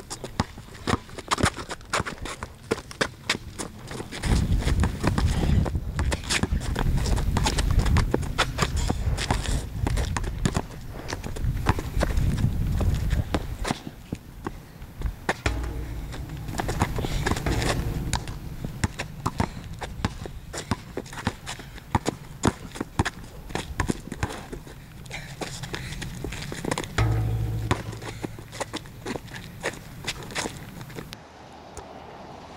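A basketball bouncing on a concrete court, with players' footsteps, during a casual game of dribbling and shooting: many sharp irregular thumps, over stretches of low rumble.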